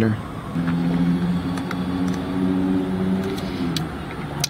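A car engine running with a steady, even-pitched drone for about three seconds, heard from inside the car.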